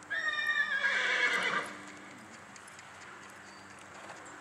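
A horse whinnying: one loud neigh about a second and a half long, starting high and dropping in pitch as it ends.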